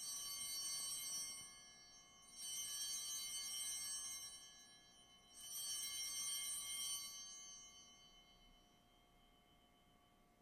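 Altar bells rung three times, each ring a shimmer of high bell tones that fades away. They mark the elevation of the consecrated host.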